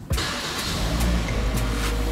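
Toyota Corolla Altis Grande's 1.8-litre four-cylinder engine starting: it catches suddenly just after the start and then runs steadily.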